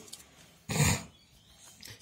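A man's single short cough, about two-thirds of a second in.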